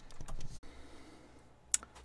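Paper sheet being handled and laid down on a table: a soft rustle, then a couple of light clicks near the end.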